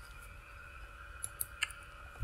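Quiet room tone with a few faint clicks of a computer mouse, three or four of them between about a second and a half and two seconds in.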